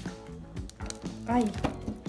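Thin clear plastic Easter-egg mold crackling and clicking several times as it is flexed and pulled off a chocolate shell, over steady background music. A woman gives a short 'ai' partway through.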